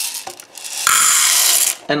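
Dry popcorn kernels poured into a popcorn machine's chamber: a dense rattle of many small hard grains lasting about a second, then stopping abruptly.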